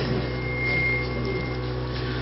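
A steady low electrical hum with faint hiss in a pause between spoken phrases, with a thin high tone sounding for about a second in the middle.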